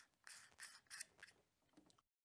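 A few faint, short scrapes of metal screw threads as a 2-inch filter and the two halves of a camera lens adapter are turned together by hand.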